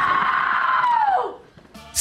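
A long, high-pitched scream of 'Aaah!' held at a steady pitch, then sliding down and dying away about a second and a half in.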